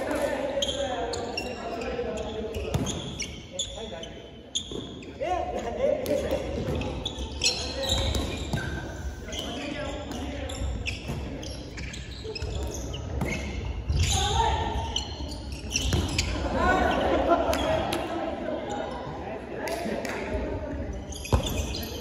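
Dodgeball practice in a gymnasium: a ball thudding on the hardwood floor again and again amid players' voices calling out, echoing in the large hall.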